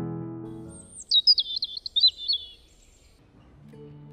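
A songbird's rapid run of high chirps that jump up and down in pitch, lasting about two seconds, as piano music fades out. New music begins near the end.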